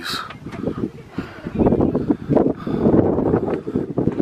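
Wind buffeting the camera's microphone: an uneven low rumble in gusts, growing louder about one and a half seconds in.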